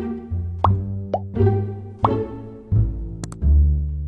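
Playful children's background music with plucked low strings, overlaid with three short rising 'bloop' plop sound effects in the first half, then sharp double clicks near the end.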